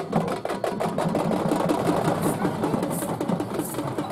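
Fast, even drumming of a festival procession, about eight beats a second, with a short hissing clash recurring a little under once a second from about halfway through.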